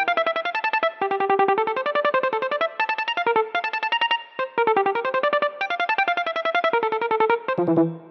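Software electric piano played through an arpeggiator in a fast, even run of sixteenth notes at 160 BPM, about ten notes a second, the pitch climbing and falling in short patterns; the notes are triggered by touch on a Playtronica TouchMe MIDI controller. The run breaks off briefly about halfway through and stops shortly before the end.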